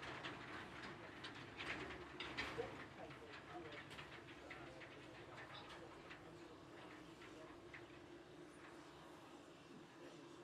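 Narrow-gauge skip wagons and locomotive wheels clicking and clanking faintly over the rail joints and points at low speed, the clicks thinning out after the first few seconds over a steady low hum.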